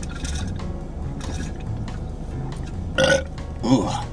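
A man belches loudly about three seconds in, trailing into a second, shorter belch. His stomach is overfull from eating a whole pizza and he feels sick. Background music plays underneath.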